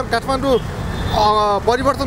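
People talking over a steady low rumble of street traffic.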